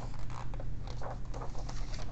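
Pages of a picture book being turned and handled: a run of soft paper rustles and scratchy ticks, over a low steady hum.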